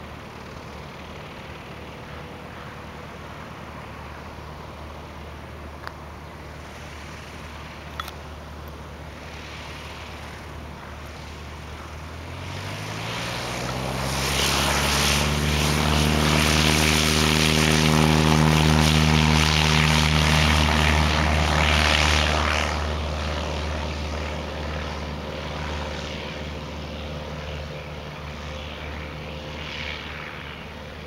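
Cessna 152's four-cylinder Lycoming engine and propeller on takeoff: a low drone at first, then the engine revs up to full takeoff power with a rising pitch about twelve seconds in. It grows loud as the plane rolls past on its takeoff run, then fades as it moves away down the runway.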